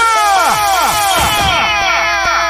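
DJ sound effect in a live mix: a rapid string of falling electronic zaps, about five a second, over a steady held synth tone.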